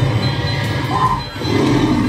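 Aristocrat Dragon Link slot machine playing its noisy fire-and-roar sound effect as flaming dragon wild symbols land on two reels during free games.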